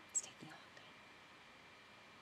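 A brief, soft breathy sound from a woman's voice just after the start, then near silence: faint room hiss.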